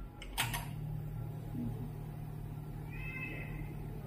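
A click about half a second in, then the flex-cable bonding machine runs with a low steady hum, and a brief high squeak comes near the end.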